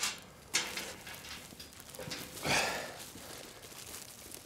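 Rustling and crackling of a plastic glove and a feed sack against straw bedding as hands work at a lambing ewe. A sudden rustle comes about half a second in, and another rough burst comes around the middle.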